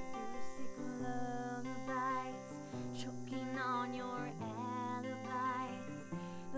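Acoustic guitar strummed in chords, with a woman singing over it, her held notes wavering with vibrato.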